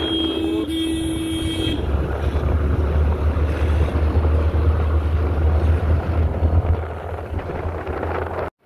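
Road traffic heard from a moving scooter. A vehicle horn sounds on one steady note for nearly two seconds at the start, then wind rumbles heavily on the microphone as the ride goes on.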